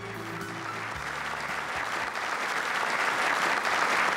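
A large roomful of people applauding, the clapping building up and growing louder. The tail of a piece of music fades out under it in the first second or so.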